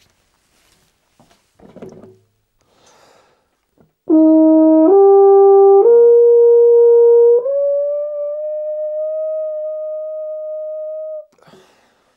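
Euphonium played to show what a squeezed, narrowed airstream does: about four seconds in it steps up through four notes, the last, highest one held for about four seconds, a high pitch but hardly a note usable in performance. Faint breaths and instrument handling come before it.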